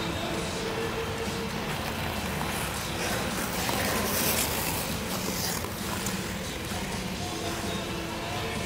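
Music playing over an ice rink's sound system, with held notes early on. A scraping hiss of skate blades on the ice rises about four seconds in and fades a second or two later.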